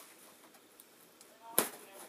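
A utility knife working into the taped seam of a cardboard box, with faint small ticks and then a single sharp knock about a second and a half in as the blade is jabbed into the lid.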